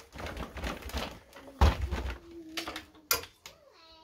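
A wooden coat hanger with a garment is hung on a metal coat rod: coat fabric rustles, there is a heavy knock about a second and a half in, and the hanger's metal hook clicks sharply onto the rod near the end.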